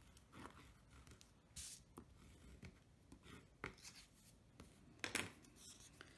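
Faint rubbing and light clicks of a bone folder pressing down a strip of cardstock, with paper being handled: a few soft scrapes and taps, the sharpest about five seconds in.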